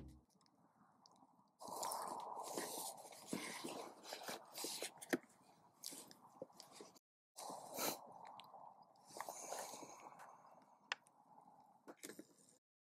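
Faint rustling and crunching close to the microphone, with scattered clicks: movement and handling noise. It starts about a second and a half in, breaks off briefly about seven seconds in, then resumes.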